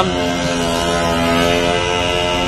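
Small motor scooter engine buzzing steadily as it passes in the road, a whiny drone like a lawnmower or a vacuum cleaner.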